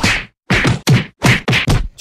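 A quick run of about five loud slapping whacks, the blows of a mock beating given to a boy.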